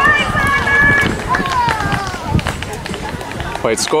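Players shouting across an ultimate frisbee field: two long, held calls in the first two seconds, over a steady low rumble and scattered thuds.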